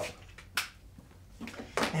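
A single sharp click about half a second in, over quiet room tone.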